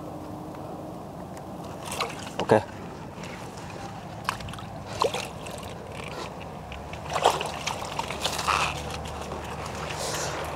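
Water hyacinth leaves rustling and shallow water sloshing as someone wades and pushes among the plants, with a scatter of short splashes and crackles.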